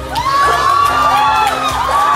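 Audience cheering and whooping: many overlapping high, gliding shouts that break out just after the start, over the song's backing music.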